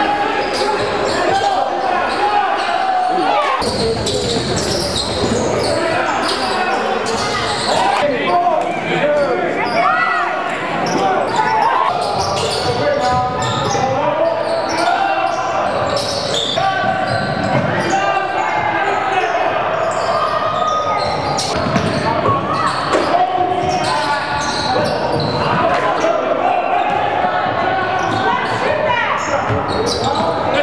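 Live sound of a basketball game in a gym: many voices from spectators and players, with a basketball bouncing on the hardwood court, echoing in the hall.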